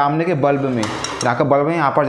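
A man talking, with a short clatter of hard plastic about a second in as the par light's housing is handled.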